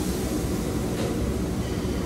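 Steady low background rumble of restaurant room noise, with no distinct events.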